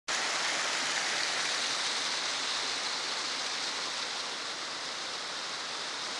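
Steady rush of water running over rocks, an even hiss with no breaks.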